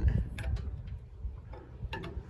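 A few light, scattered ticks and clicks from an engine hoist as it slowly lets a truck cab down onto a wooden cart, over a low rumble.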